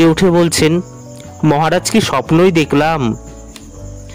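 A voice reading a Bengali story aloud in two phrases with short pauses between them, over a faint steady background sound.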